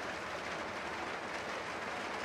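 Steady rain falling outdoors, an even hiss with no breaks.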